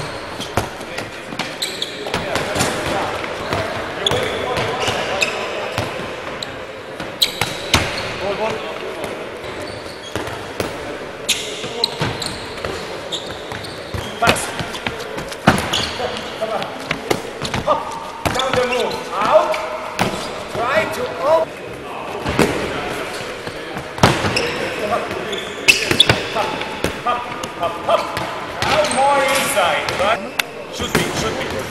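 Handballs bouncing and smacking on a wooden sports-hall floor as players dribble and run a drill: irregular sharp impacts, several a second at times, with voices talking underneath.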